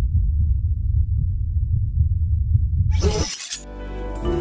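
Film soundtrack: a deep, steady low rumble, cut off about three seconds in by a brief crash like shattering glass. Sustained music begins just before the end.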